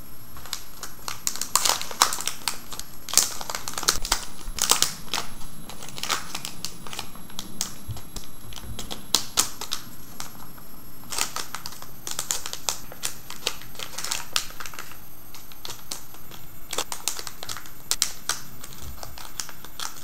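A crinkly metallized anti-static bag being opened and handled, giving irregular clusters of sharp crackles with short pauses between them.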